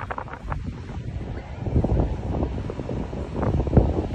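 Low, irregular rumbling noise on the microphone with many small bumps, like wind or handling noise.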